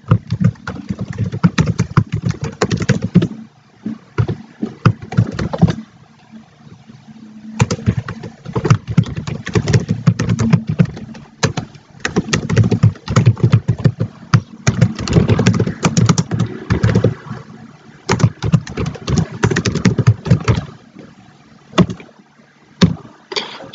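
Computer keyboard typing: fast runs of keystrokes with two short pauses in the first half.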